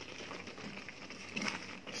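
Soursop jam cooking down in a nonstick frying pan: a faint, steady bubbling hiss as it reduces and thickens, with a spatula stirring through it and a few light ticks about a second and a half in.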